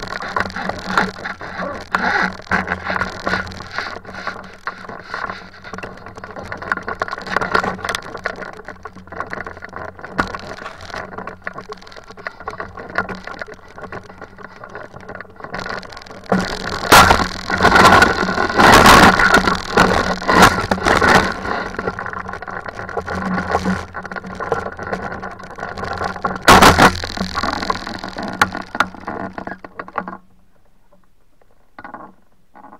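Icaro 2000 RX2 hang glider rolling on its base-bar wheels over dry grass and a dirt track after landing. The aluminium frame rattles and bumps over the rough ground, with wind on the microphone. The loudest bumps and rattles come a little past halfway and again near the end.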